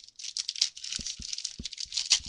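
Foil wrapper of a trading-card pack crinkling and tearing as it is opened by hand, with a few soft taps about halfway through.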